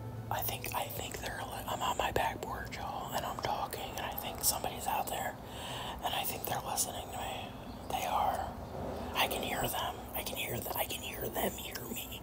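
A woman whispering in short, breathy phrases, with scattered light clicks.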